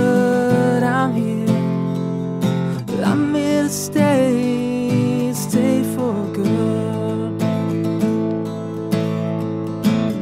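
Acoustic guitar strummed and picked in a steady instrumental passage of a live song.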